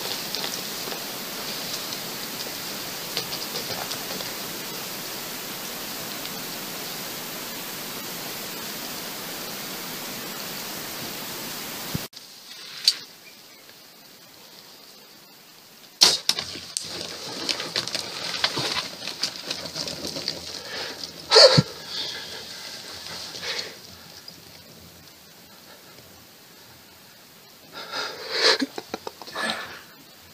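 A steady hiss, then after a cut a quieter background with a few sharp clicks. About twenty-one seconds in comes the loudest event, a single sharp snap, which fits a compound bow being shot.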